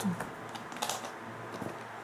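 Light clicks and taps of small cosmetic packages being handled and picked up in a cardboard box, with a sharper tap a little under a second in.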